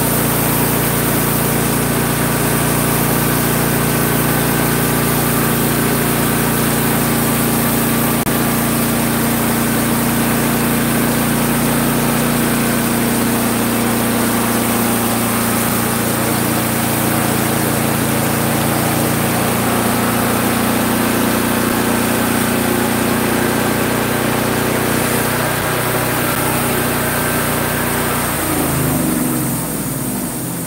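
Portable band sawmill running: its gas engine runs steadily at speed while the band blade saws through a hickory log. Near the end the engine note changes and the sound starts to die away.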